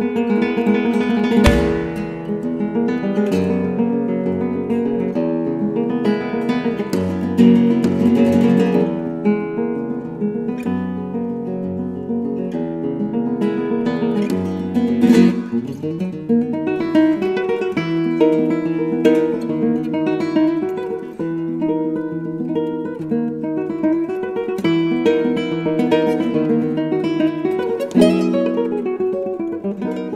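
Solo nylon-string Spanish guitar playing a fingerpicked piece, with sharp strummed chords cutting in about a second and a half in and again near the end.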